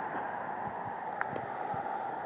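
Steady background noise, a fairly even hiss and hum with a few faint ticks.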